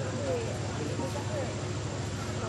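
Steady outdoor background rumble with faint, distant voices.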